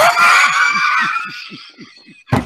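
A man's loud, high-pitched shriek of laughter that fades out over about a second and a half, over a steady run of short laughing pulses.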